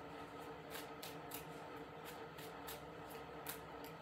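Tarot cards being shuffled by hand: faint, irregular papery clicks and flutters, over a faint steady hum.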